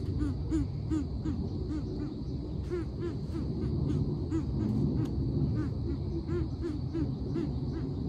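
Greater coucals calling: a long, even run of deep hooting notes, about three a second, over a steady high hum.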